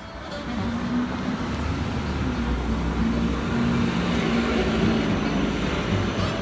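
City street traffic noise with a city bus's engine running close by, a steady low hum over the rumble of the street. It fades in at the start.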